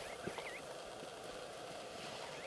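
A bird calling: a few short chirping notes that rise and fall in pitch in the first half second, over steady background noise.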